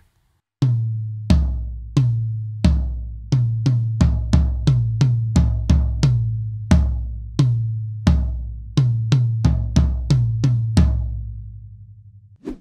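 Two toms of a drum kit, a 10-inch rack tom and a 14-inch floor tom, struck with sticks about two dozen times in an uneven pattern with a few quick runs, each hit ringing out at its own pitch. The toms are close-miked with clamp-on dynamic microphones, and the last floor-tom hit rings out near the end.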